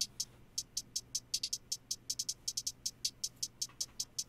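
A programmed trap hi-hat pattern playing on its own: quick, crisp high ticks several times a second, unevenly spaced, with tighter runs in places.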